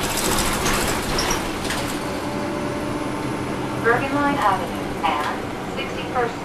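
Caterpillar C13 diesel engine of a NABI 40-SFW transit bus, heard from the rear seats, running steadily with its engine cooling fans on. A brief hiss comes in the first second.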